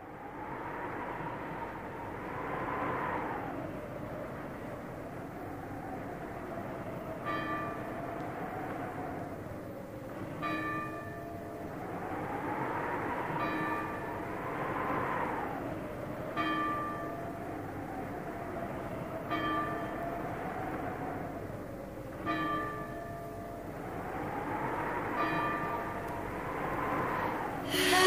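A bell tolling slowly, one ringing strike about every three seconds beginning about seven seconds in, over a sustained drone that swells and wavers in pitch. The sound fades in at the start.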